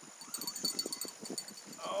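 Night insects chirping in steady, evenly pulsed high tones, over soft, rapid low ticking. A man's voice starts right at the end.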